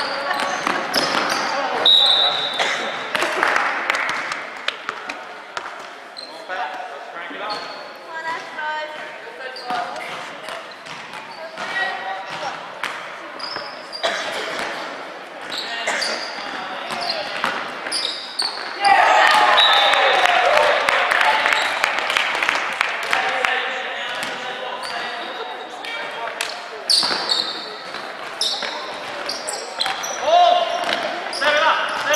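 Indoor basketball game in an echoing gym: the ball bouncing on the hardwood court, sneakers squeaking, and indistinct shouts from players and spectators. The voices swell suddenly and loudly about two-thirds of the way through.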